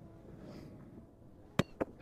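Roundnet serve: a hand strikes the ball and the ball bounces off the net, two sharp smacks about a fifth of a second apart near the end, the first the louder.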